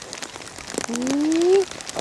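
A man's voice giving one drawn-out call that rises in pitch, about a second in, over light irregular clicking.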